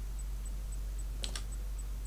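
A few computer keyboard key clicks close together, a little past halfway, over a steady low electrical hum.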